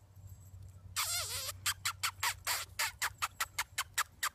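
A puppy whining: one wavering high cry about a second in, then a quick run of short high squeaks, about five a second.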